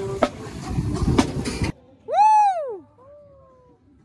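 A marching band playing brass with drum hits, cut off abruptly a little under two seconds in. After a short pause comes one loud meow-like cry that rises and then falls in pitch, then a fainter falling tone.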